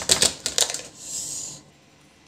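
A quick run of sharp clicks and taps from something being handled, followed about a second in by a brief hiss.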